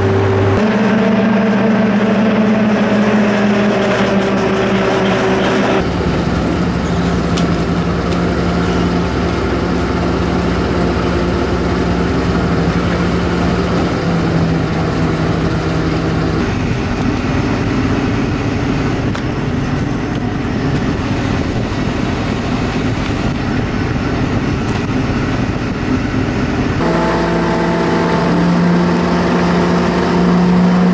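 Fishing trawler's diesel engine running steadily under way with the trawl net out astern, a constant hum over the wash of the water, its pitch stepping abruptly a few times.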